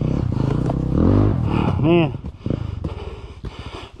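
KTM dirt bike engine running low, then cutting out about a second in, after a steep hill climb. Quieter scuffling follows.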